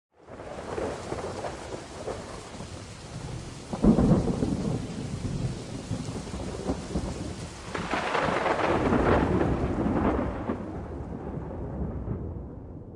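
Thunderstorm sound effect: steady rain with a sudden thunderclap about four seconds in and a second, longer peal of thunder from about eight to ten seconds, dying down near the end.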